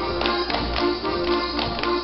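Lively traditional folk-dance music with held, reedy tones, cut through by an uneven run of sharp slaps and stamps from Schuhplattler dancers striking their thighs and shoes.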